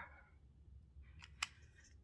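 Faint handling noise of a makeup product: soft scrapes and light ticks, with one sharp click about a second and a half in, over a low room hum.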